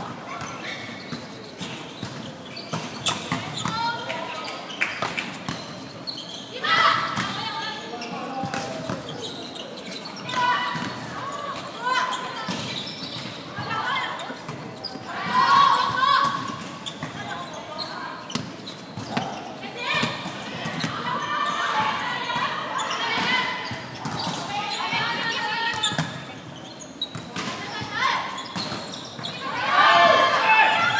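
Indoor volleyball rally sounds: repeated sharp impacts of the ball being struck by hands and landing on the wooden court. Players call out to each other now and then, all echoing in a large sports hall.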